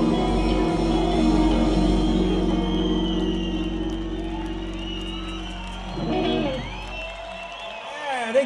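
A live rock band's final chord on electric guitar, bass and cymbals, held and slowly fading away. Crowd cheering and whistling runs underneath.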